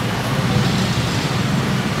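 Steady low rumble of street traffic and vehicle engines, unbroken throughout.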